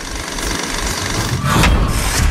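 Rushing, sound-designed whoosh with a deep rumble under it, growing louder toward the end, made for an animated logo sting.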